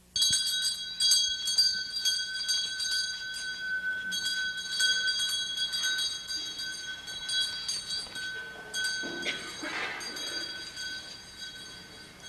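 Small bells jingling: a steady, shimmering ring of several high tones that pulses rapidly and starts suddenly. There is a brief rougher noise about nine to ten seconds in.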